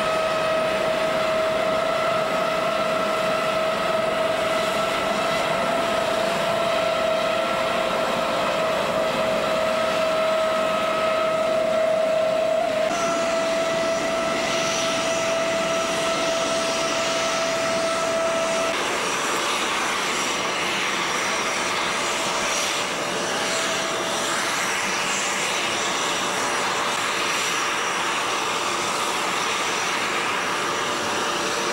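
French Navy Dauphin helicopter turning its rotor on the ground, its turbine engines giving a steady high whine over a rushing noise. About two-thirds of the way through, the whine drops away and a broader rushing aircraft noise carries on.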